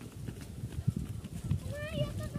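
Footsteps going down concrete steps, a run of irregular dull thuds, with a child's high voice starting near the end.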